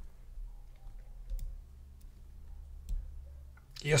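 A few faint, scattered clicks over a steady low hum during a pause in speech.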